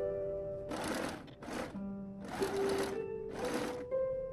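Domestic sewing machine stitching in four short runs of under a second each, stopping and starting while the fabric is guided. Background music of held notes plays under it.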